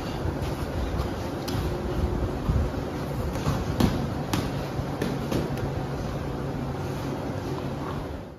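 Boxing gloves striking an opponent's gloved guard during sparring: a series of irregular sharp slaps, the loudest around the middle, over a steady rushing background noise.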